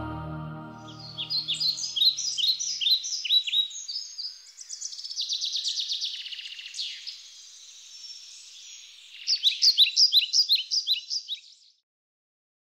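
Soft background music fading out over the first couple of seconds, giving way to birds singing: quick, high, downward-sweeping chirps, a faster trill in the middle, and a last run of chirps near the end that cuts off suddenly.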